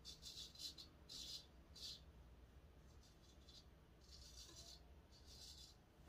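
Henckels Friodur straight razor scraping through lathered stubble on the neck: about seven short, faint, crisp strokes, a quick run of them in the first two seconds, then a few slower ones.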